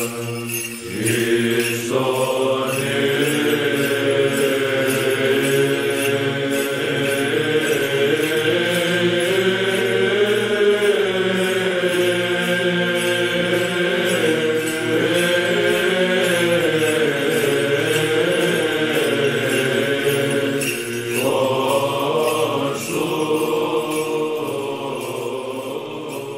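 Church chant: a slow, sustained sung melody over a steady low held drone.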